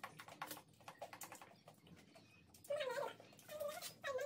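Close mouth sounds of eating pizza: a run of soft wet chewing clicks and smacks. Near the end come two short high-pitched vocal calls whose pitch bends.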